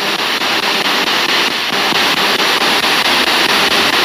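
Radio static hiss from a spirit-box sweep radio scanning through FM stations, steady and fairly loud, with a faint rapid flicker as it steps from frequency to frequency.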